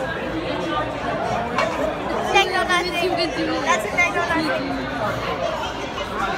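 Indistinct chatter: voices talking, none of it clear words, in a room with other people.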